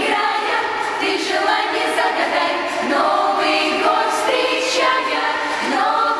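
Girls' choir singing a Russian New Year song together.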